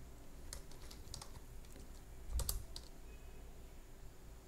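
Computer keyboard keystrokes: a short, irregular run of separate key clicks, the loudest a little over two seconds in.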